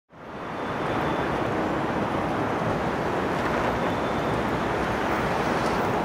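Steady outdoor city background noise, the hum of distant traffic, fading in over the first second.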